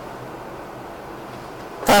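A pause in a man's talk: only steady, faint room noise with a light hiss, then his voice starts again just before the end.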